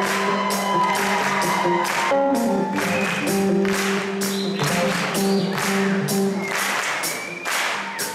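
Live soul band music with a keyboard solo on a Nord Electro 3: held, organ-like chords and bent notes over a steady drum beat, with cymbal and drum hits about twice a second.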